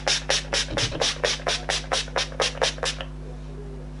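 Pump bottle of Urban Decay All Nighter setting spray misting the face in rapid short hissing sprays, about five a second, stopping about three seconds in. A steady low hum lies underneath.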